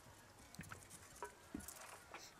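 Near silence, with a few faint, short taps.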